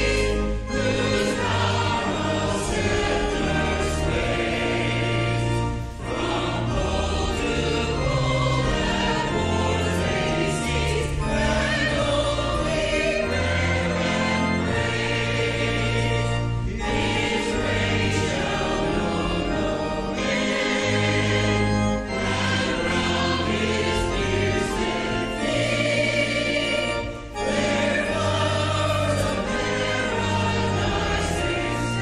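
Church choir singing an anthem with held chords over sustained low accompaniment notes, in phrases broken by short pauses every few seconds.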